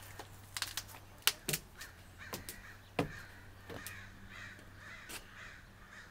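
Footsteps knocking on composite deck stairs and boards, with a run of faint, harsh bird calls repeating a few times a second in the background.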